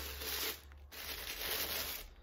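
Thin white wrapping paper rustling and crinkling as it is pulled off a wrapped wine glass, in two stretches with a short pause just before a second in.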